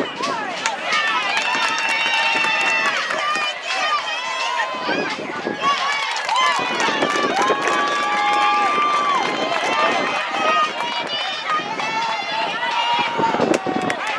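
Many voices shouting and calling out at once across a lacrosse field, overlapping, some as long held calls, with frequent sharp clacks of lacrosse sticks.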